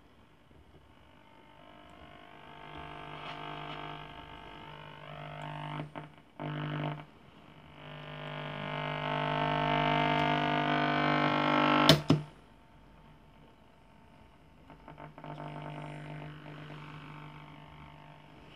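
Schaub-Lorenz Touring 30 transistor radio being tuned: distorted whistling tones that glide upward in pitch over a buzzing hum, swelling louder for several seconds. A sharp crack comes about twelve seconds in, then only a quieter hum remains.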